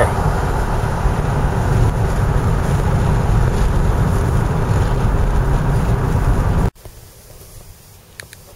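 Steady road noise inside a moving car, a dense low rumble without words. It cuts off abruptly about seven seconds in, leaving a much quieter background.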